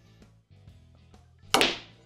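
Faint clicks of a snooker shot, the cue tip striking the cue ball and then ball knocking ball, within the first second under quiet background music; a man's loud exclamation follows about a second and a half in.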